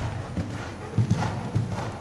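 Hoofbeats of a horse cantering on the sand footing of an indoor arena: a run of dull, low thuds.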